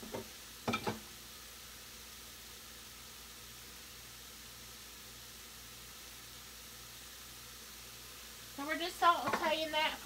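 Diced carrots, celery, onion and garlic sautéing in olive oil in an enamelled cast-iron pot, a faint steady sizzle. A voice starts near the end.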